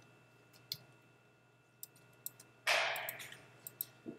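A few light computer mouse clicks in a quiet room. About two-thirds of the way through comes a short rush of hiss-like noise, the loudest sound, which fades away over about half a second.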